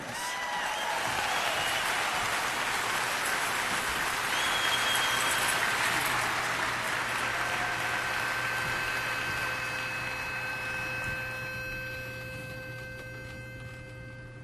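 Audience applauding, steady for about ten seconds and then slowly dying away.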